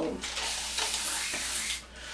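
Hand-held spray bottle spraying onto hair: a steady hiss lasting about a second and a half, stopping near the end.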